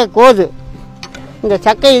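A voice, speaking or singing, over background music.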